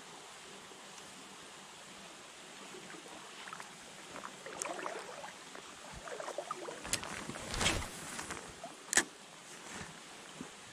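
Quiet, steady flow of a small shallow river, with scattered clicks and rustling as a spinning rod and reel are handled. The loudest is a rustling swell about eight seconds in, with a sharp click about a second later.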